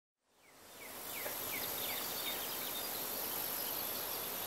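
Outdoor garden ambience fading in from silence within the first second: a steady high insect drone with a few short, high, falling chirps in the first couple of seconds.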